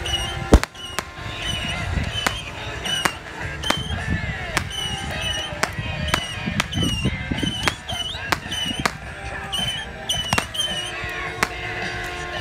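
Fireworks going off: sharp pops and bangs at irregular intervals, one or two a second, the loudest just after the start, among short repeated high chirping tones.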